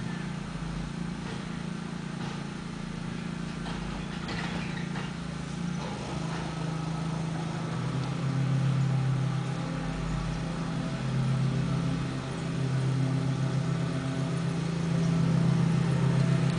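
Rear-loader garbage truck's diesel engine running, with a clatter of trash tipped into the hopper about four seconds in. From about six seconds in the engine speeds up and grows louder in repeated surges.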